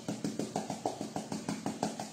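Glass jar of crushed red chili being worked by hand to dispense chili onto a plate, giving a rapid, even run of clicks at about six or seven a second.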